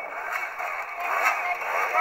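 Enduro dirt bike engine revving, its pitch rising and falling as the rider works the bike over a dirt mound obstacle.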